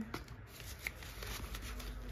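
Paper dollar bills rustling and crinkling quietly as they are handled and tucked into a clear plastic binder envelope, a scatter of small rustles and clicks.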